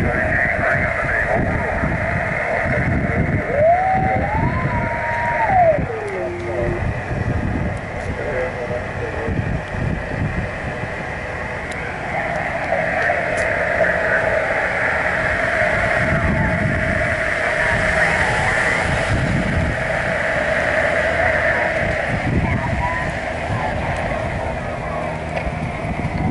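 Single-sideband receiver audio from the FO-29 satellite's downlink on a Yaesu FT-817ND: garbled voices of other stations coming through the transponder, with a whistling tone that steps up and then slides down about four seconds in. Low rumble from wind or traffic runs underneath.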